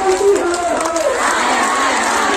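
Large crowd of protesting women shouting slogans together, loud and continuous with many voices overlapping.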